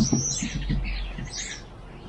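Small birds chirping: a few short, high calls, with a brief low rattling at the very start.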